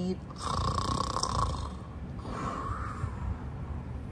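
A woman's voice imitating snoring, two snores: a longer one lasting about a second, then a softer one around two seconds in.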